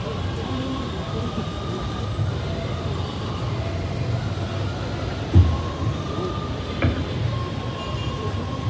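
Steady low rumble of city background noise with faint murmuring voices, broken by a sharp thump about five and a half seconds in and a lighter knock a little later.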